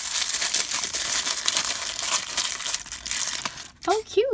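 Crinkly printed wrapper being unwrapped and crumpled between the fingers, a dense run of crackling that dies away just before the end.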